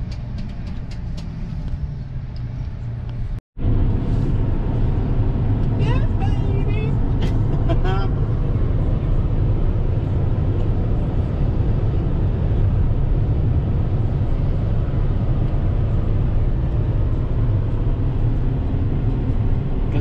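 Steady low road and engine rumble inside a Jeep cruising on a highway, with a few brief voice sounds about six to eight seconds in. Before it, a quieter few seconds of an airport people-mover ride with faint clicks, ending in an abrupt cut about three and a half seconds in.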